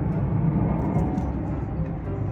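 Steady low outdoor rumble with no distinct events, a few faint ticks over it.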